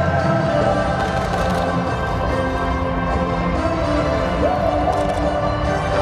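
Background music with slow, sustained notes and a steady level.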